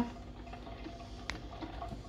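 Drip coffee maker brewing quietly: a faint steady hum with water dripping, and one sharp click about a second in.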